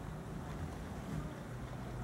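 Wind rumbling steadily on the microphone over faint outdoor background noise.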